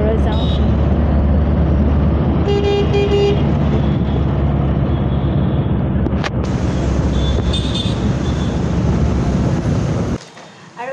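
Steady road and engine rumble heard from inside a moving vehicle, with two short horn toots about two and a half seconds in.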